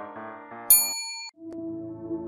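Background piano music breaks off with a bright, high-pitched bell-like ding, an edited-in sound effect that rings for about half a second and cuts off abruptly. After a brief gap a softer, slower ambient music track begins.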